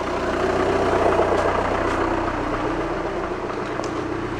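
Steady running hum of a Volvo electric power steering pump in the engine bay, over a 2.0 TDI common-rail diesel idling.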